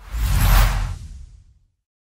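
Whoosh sound effect with a deep low rumble under it, swelling fast and fading away over about a second and a half.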